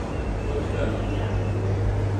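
Market ambience: indistinct background voices over a steady low hum.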